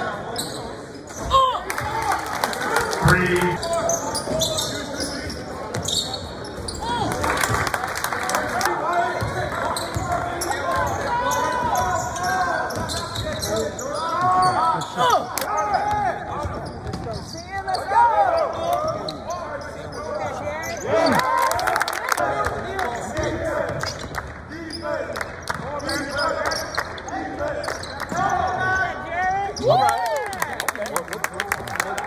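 A basketball dribbled and bouncing on a gym's hardwood court during play, sharp knocks that echo through the large hall, with voices of players and spectators.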